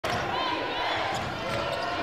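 A basketball being dribbled on a hardwood court, over the murmur of voices in an arena.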